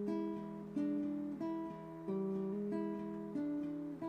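Acoustic guitar playing a blues figure over a held E chord: a hammer-on on the third string from open to the first fret, the open sixth string as a bass note, then single notes on the top strings (first string open, second string third fret). A new note sounds about every two-thirds of a second, each ringing on into the next.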